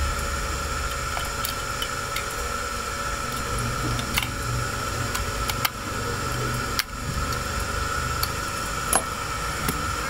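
A small metal tool scraping and clicking against the battery terminals inside a transistor radio's battery compartment, cleaning off the rust that has cut the radio's power. There are a few sharp clicks over a steady background hum and hiss.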